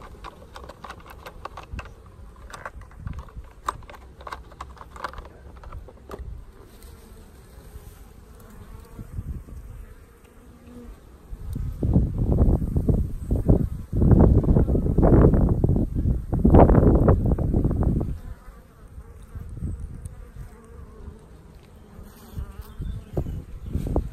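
Honeybees buzzing around an open hive. From about halfway through, a loud, irregular low rumble on the microphone lasts some six seconds before it settles again.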